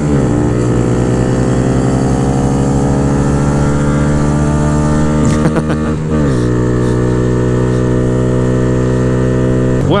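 2022 Honda Grom's single-cylinder four-stroke engine, with an aftermarket cam, intake and ECU flash, pulling under acceleration with its pitch rising slowly. About six seconds in the revs drop, then the engine holds a steady note.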